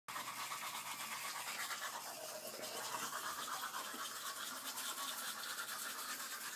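People brushing their teeth with manual toothbrushes: a steady wet scrubbing of fast, even back-and-forth strokes.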